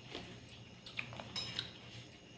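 Metal spoon clinking against ceramic bowls and plates, a few light, short clinks about a second in over a faint low hum.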